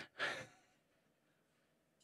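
A short breathy exhale from a person, lasting under half a second, then near silence.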